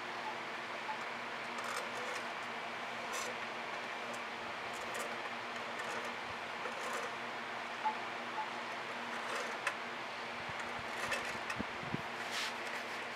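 Steady mechanical hum, with a few faint taps and soft scrapes from a tool drawn through wet acrylic paint on a canvas.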